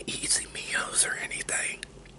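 A man whispering for about a second and a half, followed by two short clicks.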